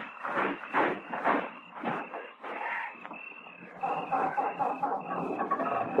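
Radio-drama sound effect of a truck being started and driven off. A few knocks come first, then about halfway through the engine catches and runs steadily.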